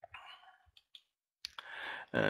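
Faint clicks of a computer mouse advancing a presentation slide, with a soft breath near the end.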